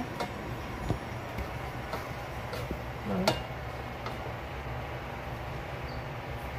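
Steady low hum of kitchen background noise with a few faint clicks, and one brief voice sound about three seconds in.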